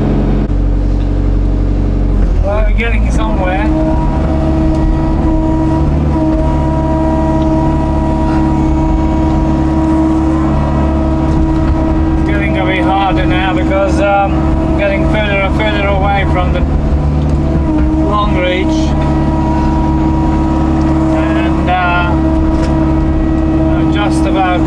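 Hydraulic excavator's diesel engine running steadily under load while it digs mud, with a steady hydraulic whine that comes in a few seconds in. Wavering higher-pitched sounds rise and fall over it through the middle and later part.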